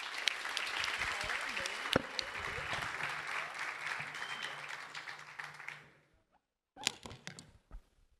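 Audience applauding, dying away after about six seconds. A few sharp knocks follow near the end.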